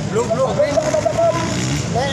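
Motocross dirt bike engines revving on the track, the pitch rising and falling as riders work the throttle over the jumps, mixed with spectators' voices.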